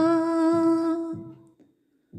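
A woman's singing voice holding one long note at the end of a sung line, fading out about a second and a half in, then silence.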